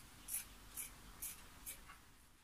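Scissors snipping through fabric in a regular run of short cuts, four snips about half a second apart.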